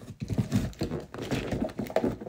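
A large cardboard flat-pack box being handled and pried open: irregular knocks, taps and scrapes of cardboard.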